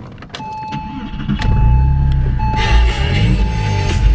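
2003 Porsche 911 Carrera's flat-six engine being started. A few clicks come first, then the engine catches about a second and a half in, its revs flare up briefly and settle to a fast idle. The sound is heard from inside the cabin, with a steady warning chime tone beeping over it.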